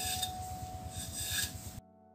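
A knife blade shaving a thin bamboo strip, with a couple of scraping strokes as the strip is drawn along the edge. The sound cuts off suddenly near the end.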